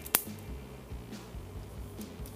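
Lego Technic pneumatic pistol firing: a single sharp, very short snap just after the start as the air is dumped into the firing piston. Quiet background music plays under it.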